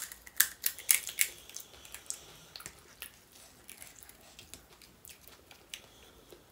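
Crisp puri shell crackling as it is cracked open and pressed into the pea filling: a quick run of sharp cracks in the first second and a half, then fainter scattered clicks.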